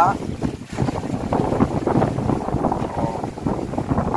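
Wind buffeting the microphone over choppy sea aboard a wooden outrigger fishing boat: a loud, gusty rush, with faint voices in it.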